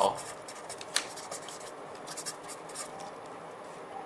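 Felt-tip marker writing on paper: a run of short scratchy strokes in two clusters, the sharpest one about a second in.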